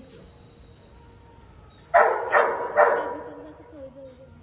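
A dog barking three quick times, about halfway through; the barks are loud.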